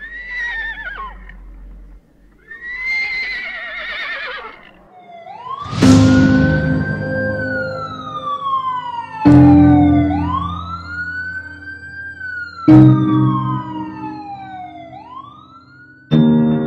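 A horse whinnies twice with a quavering call. Then a siren wails, rising and falling about every three and a half seconds, over three loud, deep music hits that come about six, nine and thirteen seconds in.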